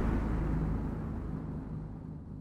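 The dying tail of a deep cinematic boom sound effect from an animated logo intro: a low rumble with a faint low hum, fading away steadily.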